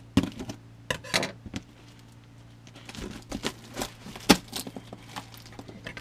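Scissors cutting through packing tape and cardboard on a shipping box: irregular snips, scrapes and crinkles, with one sharp snap about four seconds in.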